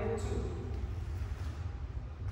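A spoken word trailing off in the first half second, then a steady low hum of room noise with no distinct event.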